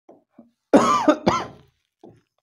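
A man coughing twice in quick succession, loud and short.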